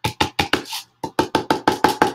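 A fast, even run of sharp knocks, about six or seven a second, with a short break in the middle, from handling a jar of thick, clumpy chalk paint.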